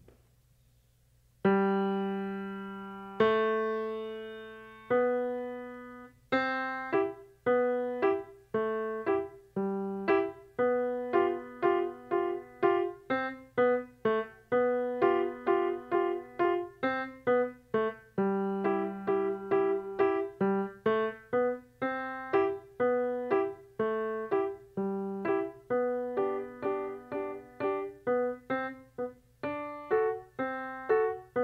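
Solo grand piano played by a child. It begins about a second and a half in with three long held chords, then moves into a steady stream of short, detached notes with quick repeated notes.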